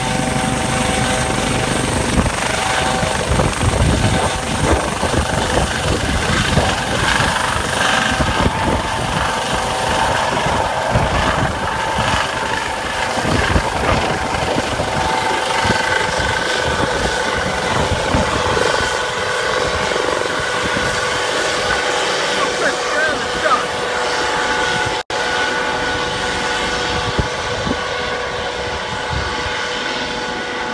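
A US Coast Guard MH-65 Dolphin helicopter's turbines and rotor run loudly as it lifts off and climbs away, a steady turbine whine over a noisy rotor rumble. The low rumble thins in the second half as the helicopter moves off.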